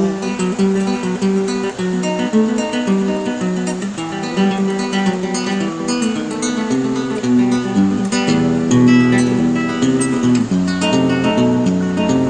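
Nylon-string classical guitar playing the instrumental interlude of a milonga: a plucked melody over bass notes, growing fuller with more chords about two-thirds of the way through.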